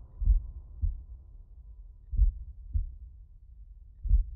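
Slow heartbeat sound effect: two pairs of low lub-dub thumps about two seconds apart, over the fading tail of a low drone.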